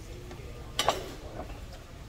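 A ceramic plate set down on the tabletop: one sharp clink a little under a second in, then a smaller knock about half a second later, over faint background voices.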